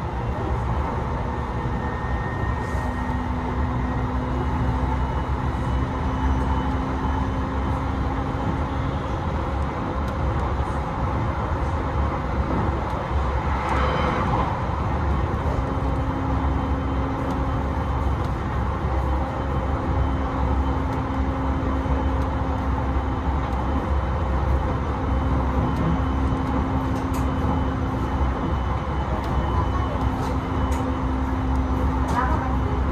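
Running noise heard inside a JR East E721 series AC electric multiple-unit train at speed: a steady low rumble with a low hum that drops in and out, and a brief rushing swell about halfway through.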